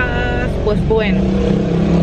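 Car engine running, heard from inside the cabin as a steady low rumble under a woman's voice.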